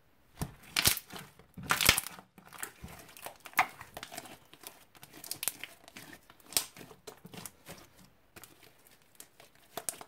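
Thick green slime being stretched and squeezed by hand, giving irregular crackles and pops. The loudest come about one and two seconds in, then smaller ones follow.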